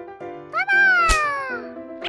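A cartoon sound effect: a high, whiny cry that falls in pitch for about a second, with a sharp click partway through, over children's background music.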